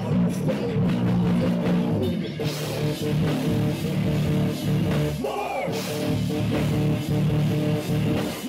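Live metal band playing a song at full volume, with electric guitars and a drum kit.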